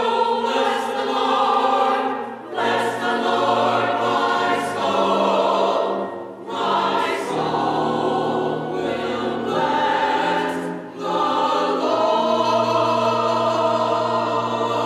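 Small mixed church choir singing, in sustained phrases with three brief breaks between them.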